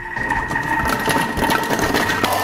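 Thermomix food processor running at speed 6, its blades chopping a halved onion: a steady motor whine with the onion pieces rattling in the bowl, starting right at the beginning.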